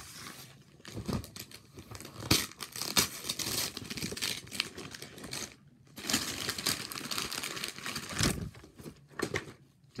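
Gift wrapping paper being ripped and crumpled off a boxed present, in irregular spells of tearing and rustling with sharp crackles, pausing briefly around the middle and again near the end.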